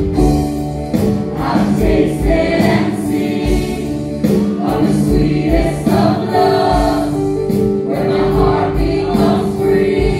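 Church praise team singing a slow worship song live: several voices in harmony over keyboard, bass guitar and drums, with a regular low beat underneath.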